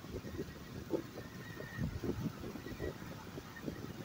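Car driving at road speed, with an irregular low rumble of road and wind noise buffeting the microphone.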